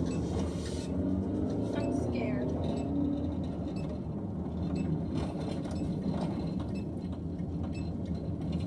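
Steady low rumble of a car's engine and road noise heard inside the cabin while driving, with faint talking in the first few seconds.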